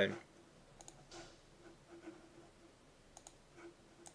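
A few faint, sparse clicks from a computer's mouse and keys as the on-screen 3D model is being changed, over quiet room tone.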